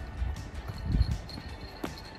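Footsteps on a dirt forest trail: dull thumps, the heaviest about a second in, under quiet background music.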